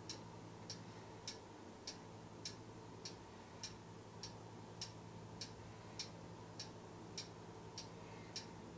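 Faint, steady ticking, evenly spaced at a little under two ticks a second, like a clock, over a low steady hum.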